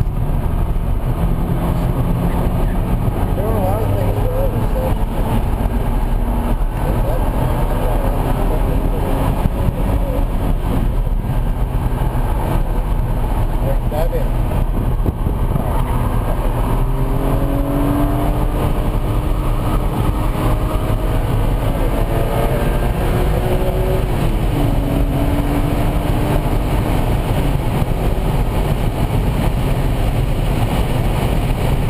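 BMW Z4 M Coupe's 3.2-litre straight-six heard from inside the cabin under hard track driving, its note climbing steadily as the car pulls and dropping once about three-quarters through at a gear change, over constant loud road and wind noise.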